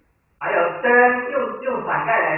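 A man's voice speaking Mandarin, starting about half a second in after a brief silence.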